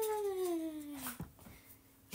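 A woman's drawn-out vocal "iii" sound that rises briefly, then slides steadily down in pitch and breaks off about a second in.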